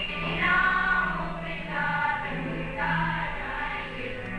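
A group of voices singing together in unison, with long held notes and a new phrase about every second.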